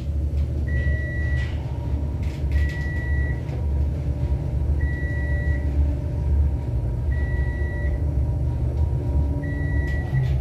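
A 1991 Dover traction elevator car travelling, with a steady low rumble and a faint hum. A short, high electronic beep sounds about every two seconds, five times in all.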